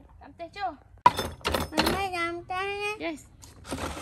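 A wooden pestle knocking in a clay mortar: a few sharp, irregular strikes, the loudest about a second in.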